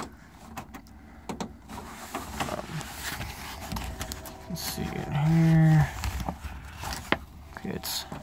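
Small clicks and scraping of metal parts inside a pickup door as the lock cylinder's metal retaining clip is pushed back into place, the clip not yet seating. About five seconds in comes a short strained hum of effort from a person's voice, the loudest sound.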